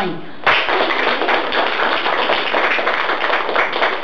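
Applause from a small group of hands clapping, starting suddenly about half a second in and keeping up steadily, in celebration of the prize announcement.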